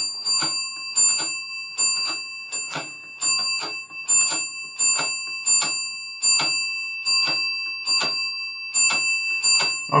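The match unit of a 1972 Williams Honey pinball machine is being stepped over and over, clicking about two to three times a second. Each step strikes the machine's 10-point bell, so the bell rings on without a break.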